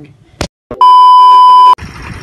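A single loud, steady beep tone lasting about a second, cut in cleanly after a click and a moment of dead silence. It is an edited-in bleep at a cut between shots.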